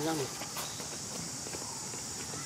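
A person's voice speaking briefly at the start over a steady high hiss, with a single click about half a second in.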